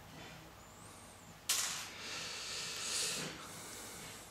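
Soft rustling hiss of hands and fingers moving a LEGO minifigure close to the microphone. A sudden rush comes about a second and a half in, and a second swell near three seconds.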